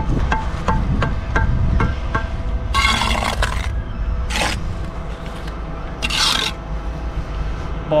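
Bricklaying trowel knocking a concrete block down into its mortar bed, a quick run of light knocks about three a second, then rasping scrapes of the trowel spreading mortar along the top of the blocks.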